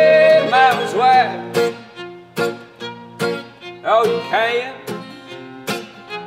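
Acoustic guitar strummed in a steady rhythm, with a fiddle playing sliding melodic phrases over it twice, in an instrumental break with no singing.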